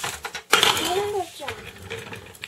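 Plastic packaging and bubble wrap crinkling loudly for about a second as the inverter is handled, with a short rising-and-falling hum from a man's voice over it.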